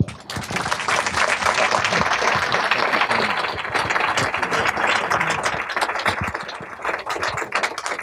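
Audience applauding, a dense patter of many hands clapping that starts abruptly and thins out near the end.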